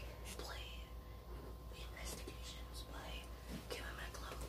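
Faint whispering over a steady low hum.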